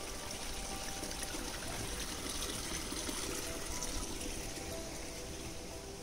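A small stream of water trickling steadily through grass.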